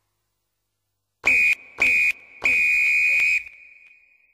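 A whistle blown three times, two short blasts and then one longer blast, each at the same steady high pitch.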